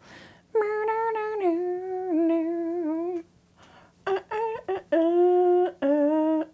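A woman humming a tune in long held notes. She pauses briefly about three seconds in and picks up again about a second later.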